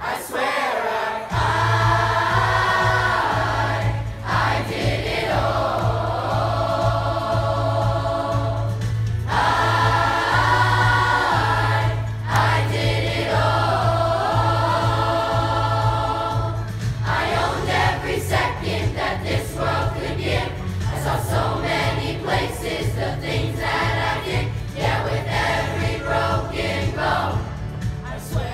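Seventh- and eighth-grade school chorus singing in parts with accompaniment: long held chords over a steady low bass note for most of the time, then a choppier, more rhythmic passage from about two-thirds of the way in.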